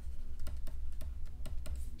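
A quick, irregular run of light clicks and taps from a pen stylus on a tablet as handwriting is written, over a steady low hum.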